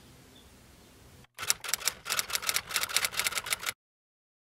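A rapid run of sharp clicks like typewriter keys, about eight a second, starting abruptly about a second in and cutting off suddenly into dead silence near the end. Before it there is only faint room tone.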